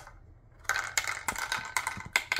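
A small piece dropped into a wooden drop-maze toy, clattering and rattling down inside it in a quick run of clicks starting a little under a second in.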